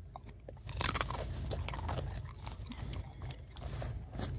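A large dog crunching and chewing a treat close to the microphone, with wet mouth sounds; the crunching grows loud about a second in and carries on in a run of crackling bites.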